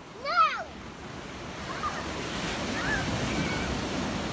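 Ocean surf breaking and washing up a sandy beach, its noise swelling from about a second in and holding steady. Just after the start, a short high call rises and falls in pitch.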